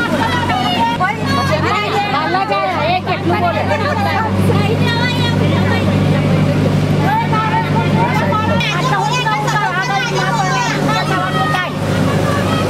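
Several people's voices talking over one another, over a steady low hum that shifts in pitch a little past the middle.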